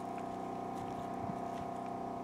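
A small engine running steadily at constant speed, an even hum with a fixed pitch, with a few faint clicks from rock being handled.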